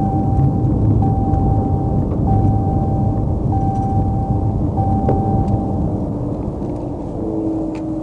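Low rumble of a patrol car rolling slowly to a stop, heard inside its cabin. An electronic tone sounds five times over the first six seconds, each about a second long with short gaps between.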